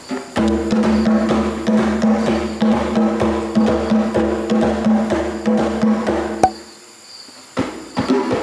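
A single player hand-drumming a rhythm pattern on a djembe. The strokes repeat evenly over a steady sustained pitched backing, and the drumming stops abruptly about two-thirds of the way through.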